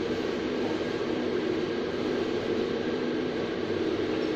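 A steady, even mechanical drone that does not change, like a fan or ventilation running.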